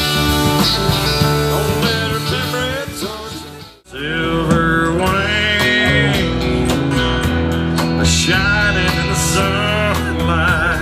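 Live country band with acoustic and electric guitars and drums. One song fades out about four seconds in, and the next starts straight after with electric guitar lines that bend in pitch.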